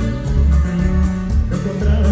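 A live norteño band playing: twelve-string guitar strumming over electric bass and a drum kit, loud and steady.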